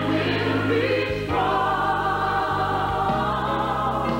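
Church choir singing long held chords, moving to a new chord about a second in and again near the end.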